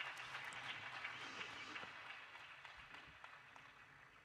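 Faint applause from an audience in a hall, thinning out and fading over a few seconds.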